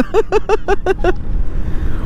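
A man laughing in a quick run of about eight short 'ha's over the first second. This gives way to the steady engine and wind noise of a moving motorcycle.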